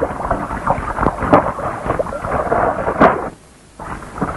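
Water splashing as a person bathes, a dense run of irregular splashes that breaks off suddenly about three seconds in and starts again just before the end.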